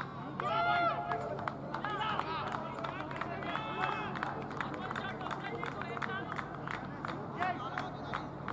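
Cricket players shouting short calls to each other on the field while the batters run between the wickets: several brief shouts in the first half, then a string of sharp taps.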